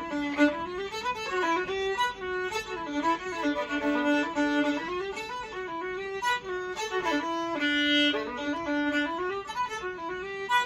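Solo fiddle playing a fiddle tune: a running melody of quick bowed notes, with a few longer held low notes along the way.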